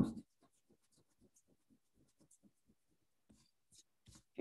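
An eraser rubbing back and forth over paper, lifting pencil guidelines from freshly inked lettering on a card: faint, quick strokes about four a second, after a brief bump at the very start.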